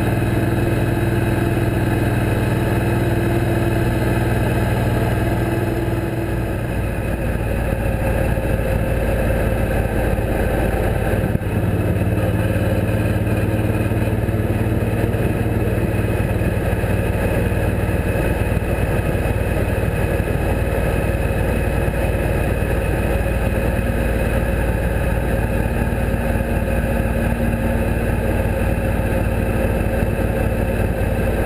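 Suzuki Boulevard C90T cruiser's big V-twin engine running steadily at highway speed, with wind rush, heard from on the bike. The engine note changes about six seconds in, and there is a brief dip about eleven seconds in.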